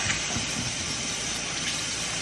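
Kitchen faucet running steadily into a stainless steel sink while hands are washed under the stream.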